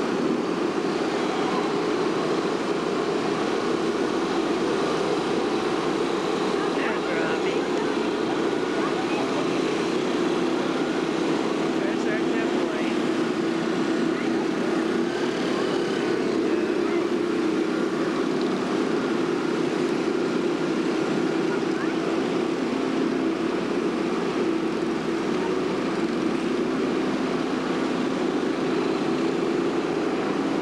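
A steady, even drone of running machinery, like a vehicle, with faint voices now and then.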